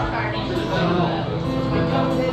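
Acoustic guitar playing, with voices talking over it; held notes settle in a little under a second in.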